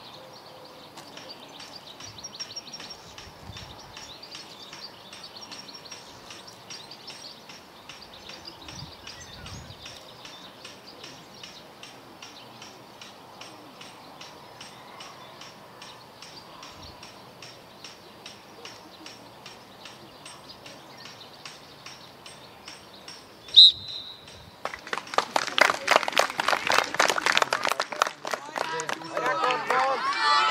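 A bird chirping over and over, about three chirps a second, against faint outdoor background. About 23 seconds in, a referee's whistle gives one short, sharp, high blast, and from about a second later spectators and players clap loudly until the end.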